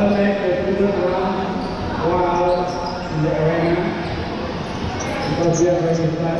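Players' voices calling out in long, drawn-out shouts that echo around a large sports hall, with dodgeballs bouncing on the court floor.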